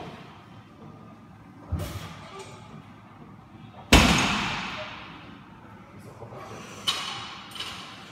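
Barbell loaded with about 212 kg of weight plates set down on the gym floor between deadlift reps: four knocks, the loudest about four seconds in, ringing on for about a second in the large hall.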